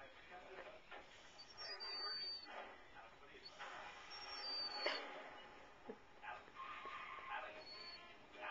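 A dog whining faintly in short, high, thin notes several times while suckling on a blanket, which the owner puts down to her getting no milk from it.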